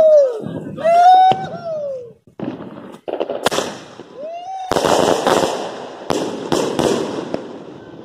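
Fireworks going off: a rushing hiss with dense crackling and sharp pops, starting about two and a half seconds in and loudest in the second half. Over the first two seconds a drawn-out voiced call rises and falls.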